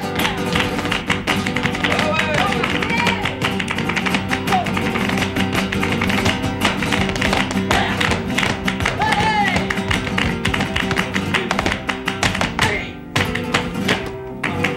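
Flamenco guitar playing with a dancer's rapid heel-and-toe footwork (zapateado) striking the stage floor, and hand-clapping (palmas). The level dips briefly near the end.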